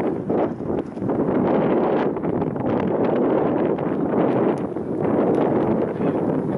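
Strong wind rushing across the microphone, a loud steady rush that dips briefly about a second in.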